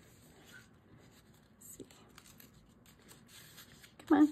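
Near silence, with faint rubbing and small ticks of hands pressing paper flat.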